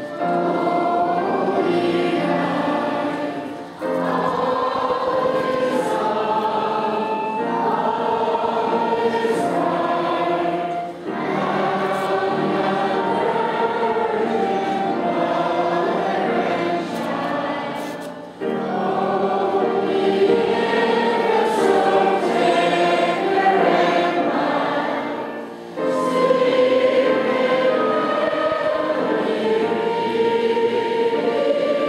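A choir singing a slow Christian hymn in long, sustained phrases, each broken by a short pause about every seven seconds.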